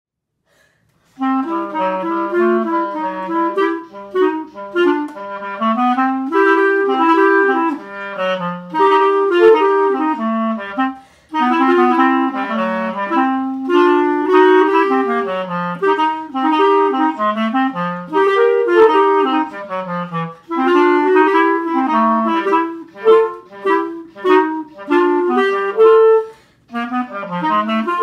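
Clarinet duet: two clarinet parts playing a jazz blues tune together, coming in about a second in. The two parts are one player recorded twice and layered, about a fifth of a second out of step with each other.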